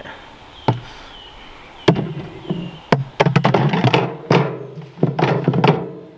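Wire fridge basket being lowered into the plastic-lined compartment of a portable compressor fridge, knocking and rattling against the liner and divider. Single knocks come first, then a dense clatter of taps and thunks through the second half.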